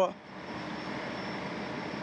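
Steady outdoor street ambience: an even, continuous machine-like noise with a faint high whine above it and no distinct events.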